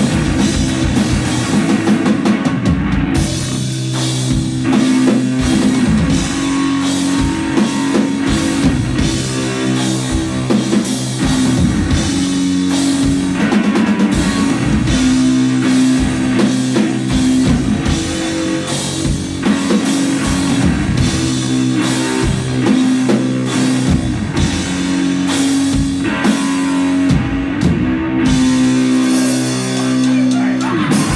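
Live rock duo of electric guitar and drum kit playing an instrumental passage: a low, held guitar riff over busy drumming with cymbals.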